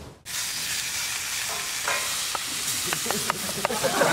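Food sizzling in a pan on a gas hob as it is stirred, starting a moment in, with a few light clicks in the second half.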